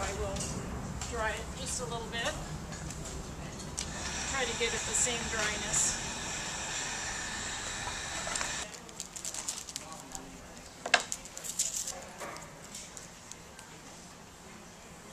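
Electric heat gun blowing steadily while drying clay, switching off about two-thirds of the way through; a few sharp knocks follow as tools and clay are handled.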